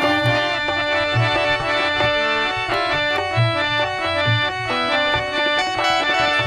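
Qawwali music: harmonium playing a melodic interlude, its notes held and stepping from one to the next, with tabla keeping time in deep strokes about once a second.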